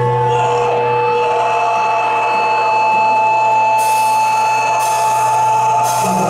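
Amplified droning tones from a metal band's stage rig, a steady low hum under long held high notes, with two bursts of hiss in the second half.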